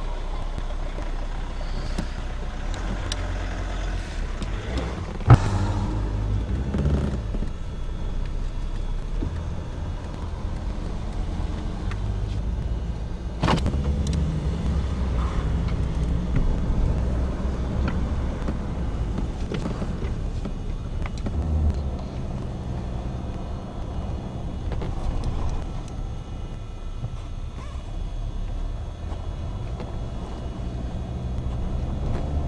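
Car driving, heard from inside the cabin: a steady low engine and road rumble, with a sharp knock about five seconds in and another about thirteen seconds in.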